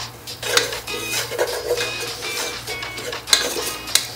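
Wooden spatula scraping and tapping against the bottom and sides of a nonstick pot, stirring sautéed garlic, onion, sugar and flour: quick, irregular scrapes and knocks, with a sharper knock near the end.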